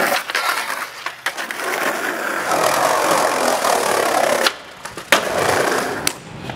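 Skateboard wheels rolling on asphalt with a steady rumble, broken by a few clacks of the board. The rolling drops off briefly near the end, then a single sharp clack of the board.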